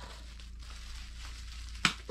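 Faint crinkling of plastic packaging wrap as a wrapped item is handled, with one sharp click near the end.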